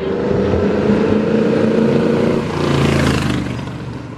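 Loud Ford 351 Windsor V8 in a 1946 Chevy pickup custom, revving as the truck accelerates away, the sound fading near the end.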